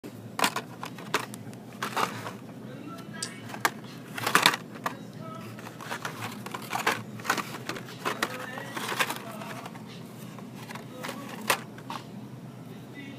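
Plastic blister-pack toy car cards clacking and crinkling as they are handled and flipped along store peg hooks: irregular sharp clicks and clatters, several louder clusters of them.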